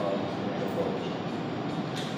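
Steady room noise, an even hiss with no distinct events, during a pause in speech.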